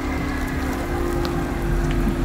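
Black Citroën electric van rolling slowly past, with no engine sound: a steady low two-note hum over a low rumble of tyre and wind noise.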